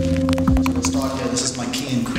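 A steady low hum with several sustained tones, thinning out about a second in as a man's voice comes in.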